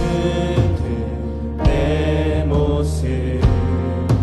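Contemporary worship band playing a Korean praise song: a group of singers over keyboard, guitars and drums, with occasional sharp drum hits.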